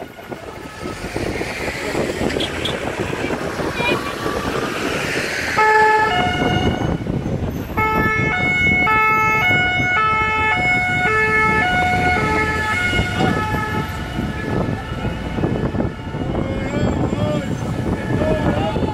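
Several French two-tone sirens on a departing convoy of gendarmerie vans, their alternating high and low notes overlapping out of step from about six seconds in, over the noise of passing vans and traffic. Before that, a single rising siren sweep over the traffic.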